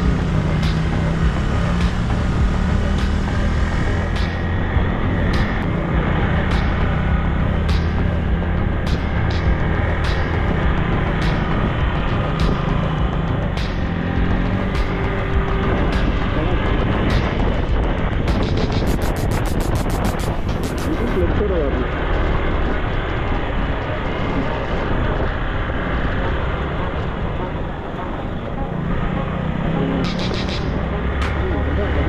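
Motorcycle engine running under way on a gravel road, its pitch shifting as the rider works the throttle, with road and wind noise on the bike-mounted microphone and short clicks throughout.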